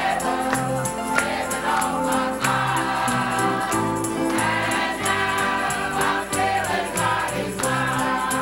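Church praise team singing a gospel song together over instrumental accompaniment, with a bass line and a steady beat.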